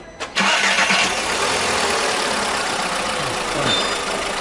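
Petrol car engine starting abruptly about a third of a second in, then running steadily at idle, its throttle body just cleaned and refitted.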